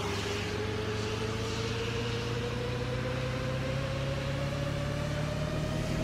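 A steady low drone with a single tone that slowly rises in pitch throughout.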